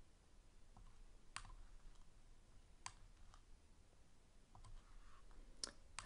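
A few faint computer mouse clicks, spaced irregularly over near-silent room tone.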